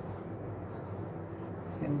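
Pen scratching across notebook paper as a word is written out by hand, a steady scratchy rustle.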